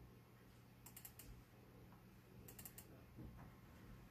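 Near silence broken by two quick clusters of faint clicks, about a second and a half apart: a computer mouse button double-clicked to open a program.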